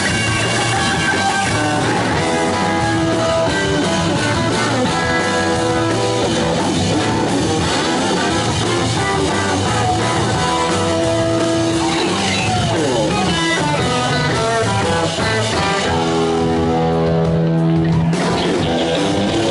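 Live rock band playing an instrumental passage: electric guitar over a drum kit. About two thirds of the way through a guitar note slides down, and near the end a chord is held and left ringing.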